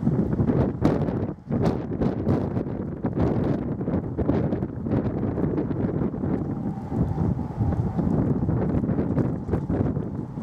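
Strong wind gusting and buffeting the microphone in uneven flurries, with a brief lull about a second and a half in.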